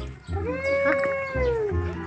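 A single long, wail-like vocal call, about a second and a half long, holding one note that rises slightly and falls away at the end.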